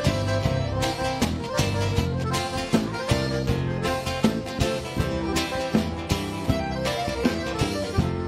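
Live band playing an instrumental break of a gaúcho dance tune: a Settimio Soprani piano accordion carries the melody over acoustic guitar, electric bass and hand drums keeping a steady beat.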